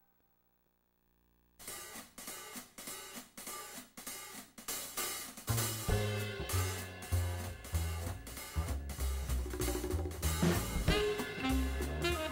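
Silence for about a second and a half, then a jazz drum kit starts with a quick cymbal and hi-hat pattern and snare. Low bass notes join about five and a half seconds in as a swing tune gets going.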